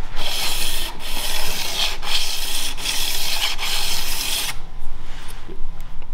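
Edge of a steel bandsaw-blade scraper blank rubbed back and forth on 320-grit sandpaper over a hard flat surface, about five strokes with a short break at each reversal, stopping about four and a half seconds in. The edge is being honed flat and free of nicks before a burr is turned on it.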